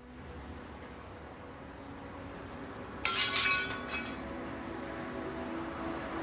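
A low, steady background rumble, then about halfway through a single bright clink, like a small bell or glass, that rings for about a second. Soft music, plucked guitar, comes in just after it.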